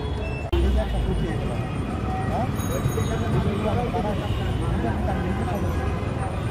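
Busy roadside ambience: people talking around the stall over a steady low rumble of traffic, with a brief break about half a second in.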